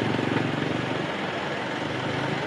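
A vehicle engine idling nearby: a steady low hum with a slight regular pulse, easing off a little toward the end.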